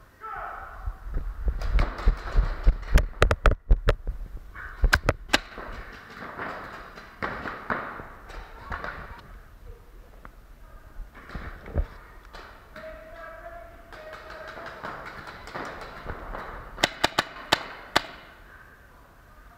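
Paintball markers firing quick strings of sharp pops, echoing in a large indoor hall: one burst in the first few seconds and another near the end.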